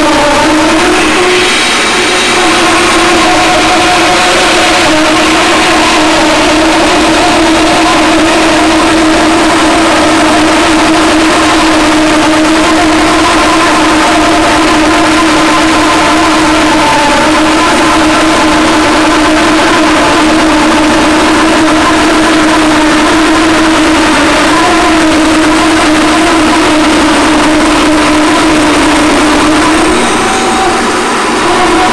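Bag-type workshop dust collector running: a loud, steady drone of motor and fan with a constant hum and a rush of air.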